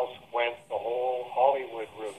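A man talking steadily, his voice thin and cut off in the highs as over a telephone line.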